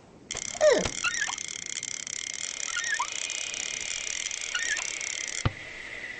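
A steady mechanical whirring and ratcheting sound effect, with a falling whistle-like glide about half a second in and a few short squeaks. It cuts off suddenly with a click about five and a half seconds in.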